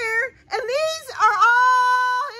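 A high-pitched voice holding long wailing notes, sliding up into each one, with a short break about half a second in.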